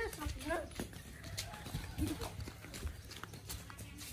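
Faint children's voices over light, irregular footsteps on bare ground, with a low rumble on the microphone.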